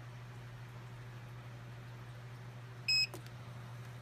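Digital controller of a ZENY 6-in-1 combo heat press giving one short, high beep about three seconds in as the set button is held, the signal that the setting has been accepted. A steady low hum runs underneath.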